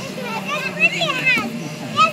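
Young children's high-pitched voices calling out and chattering at play, over a steady low hum.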